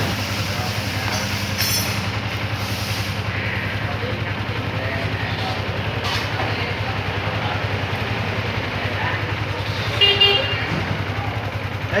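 A small motorbike engine idles steadily with an even low pulse while it is checked on the fuel-injection diagnostic computer. A brief high-pitched tone sounds about ten seconds in.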